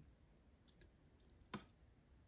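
Near silence with a few faint ticks and one short, sharper click about one and a half seconds in, from fingers handling a watch's quick-release rubber strap and spring-bar pin.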